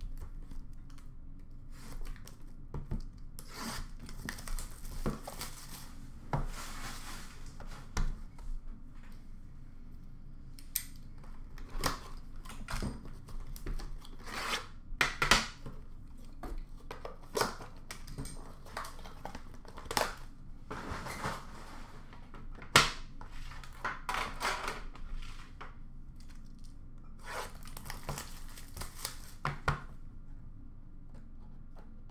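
Packaging of a hockey card box being torn open and handled: irregular rustling, tearing and crinkling, with scattered light knocks of the box's metal tin on the counter and one sharp knock about two-thirds of the way through.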